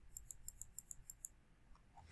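Computer mouse scroll wheel clicking as it turns: a quick, even run of faint ticks, about seven a second, that stops a little over a second in.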